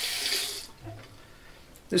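Bathroom faucet running into a sink with an even hiss, turned off under a second in.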